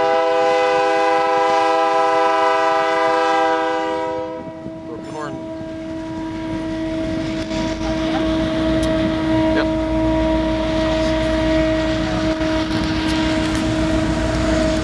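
Canadian Pacific diesel locomotive's broken air horn. It sounds a full chord for about four seconds, then most of the notes cut out and one steady note keeps sounding. The diesel engines' rumble grows as the locomotives pass close by.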